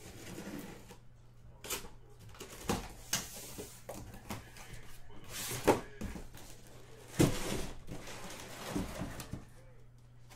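Cardboard case being cut open and unpacked: a cutter slicing through packing tape, cardboard flaps pulled open and boxes handled, heard as scattered rustles and knocks, the loudest two just before and just after the middle.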